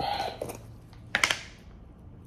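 Plastic screw lid of a glass pickle jar being twisted open with a short scraping sound, then a couple of sharp clacks a little past a second in as the lid comes off and is set down.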